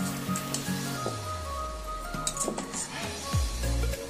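Background music with held tones and a bass line sliding downward. Over it come a few light clinks of a steel spoon against a steel bowl as chicken curry is scooped out.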